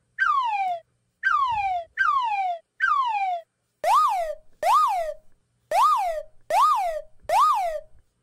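A cartoon sound effect added in editing: a whistle-like tone sliding downward four times, about once a second, then five quick rise-and-fall whoops, each one identical and separated by dead silence.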